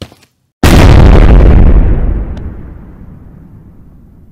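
Explosion sound effect: a sudden, very loud blast about half a second in, staying at full strength for about a second and a half, then slowly dying away.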